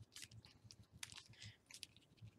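Faint crinkling and rustling of a small packet being opened by hand: a few soft, scattered crackles in near silence.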